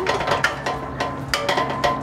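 A few sharp, irregular metal clicks of a hand tool, likely a ratchet wrench, working on the hardware of a fifth-wheel RV's folding entry steps.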